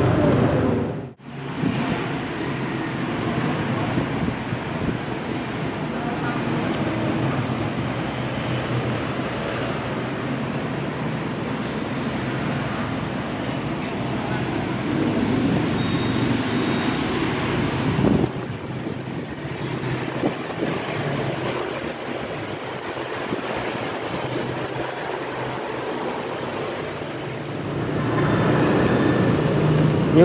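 Busy street ambience: motorbike traffic noise with voices in the background, in several stretches joined by abrupt cuts, with a brief dropout about a second in.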